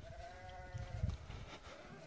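Faint bleat of a distant farm animal: one drawn-out call about a second long, with a weaker second call starting near the end.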